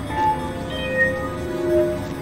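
Experimental electronic synthesizer music: several held tones at different pitches, one high and one lower in turn, over a low rumbling noise bed.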